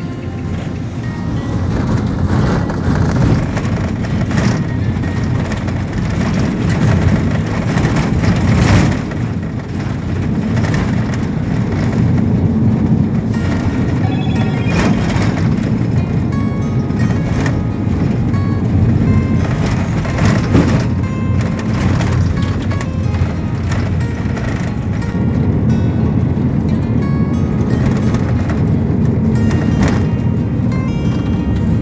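Music plays over the steady running noise of a vehicle driving along a road.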